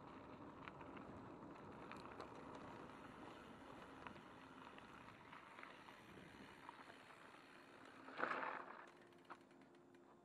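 Faint rolling noise of a mountain bike's tyres on a dirt and gravel trail, with small rattles and clicks from the bike. About eight seconds in comes a short, louder scraping burst as the bike brakes to a stop.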